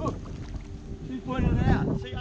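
Wind buffeting the camera microphone as a low rumble that gusts stronger in the second half. A man's short "oh" comes at the start and a brief voice near the end.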